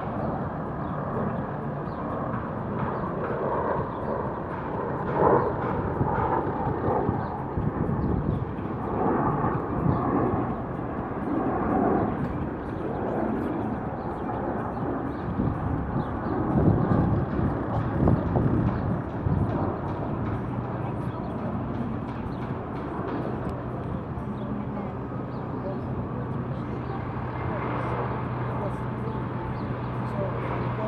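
Indistinct voices over open-air ambience, with a steady low engine hum setting in about two-thirds of the way through.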